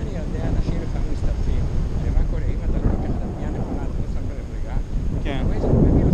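Wind buffeting an action camera's microphone in flight under a paraglider: a loud, steady, gusting low rumble.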